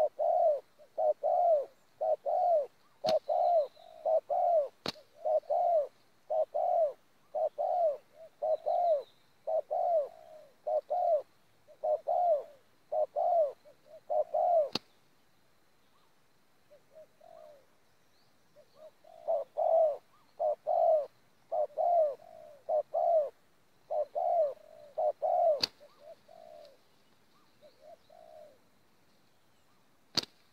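Spotted dove cooing: a long run of short arched coos, about one and a half a second, that drop to a few faint ones in the middle and then resume. A few sharp clicks fall among them.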